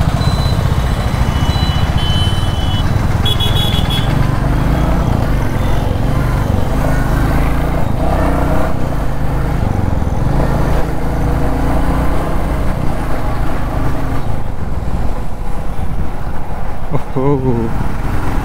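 Royal Enfield Classic 350's single-cylinder engine running steadily as the motorcycle rides through town traffic, picked up by a camera on the rider's helmet. Short high vehicle horn toots sound in the first few seconds.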